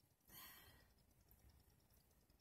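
A woman's sigh: one short breathy exhale about a third of a second in, fading within half a second, with near silence around it.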